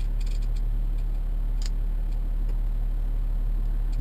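BMW E70 X5 diesel idling: a steady low engine drone heard inside the cabin, with a few faint clicks from the iDrive controller being turned to zoom the map.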